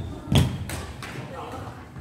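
A badminton racket hits a shuttlecock with a sharp smack about a third of a second in, followed by a fainter knock, over people talking.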